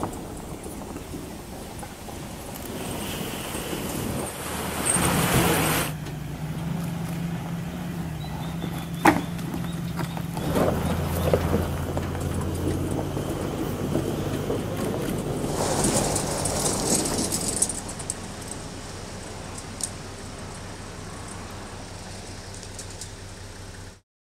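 Four-wheel drive towing an off-road camper trailer slowly over a rocky dirt track: a steady low engine hum with tyre and stone noise, louder for a couple of seconds about five seconds in and again around sixteen seconds in, and a single sharp knock about nine seconds in.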